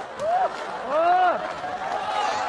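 A person's drawn-out vocal cries: a short rising-and-falling exclamation about half a second in, then a longer one that swells and falls away about a second in.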